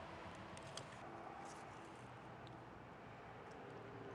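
Very quiet outdoor ambience: a faint steady hum with a few faint brief ticks and knocks.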